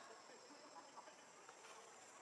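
Faint, steady high-pitched drone of insects in the forest background.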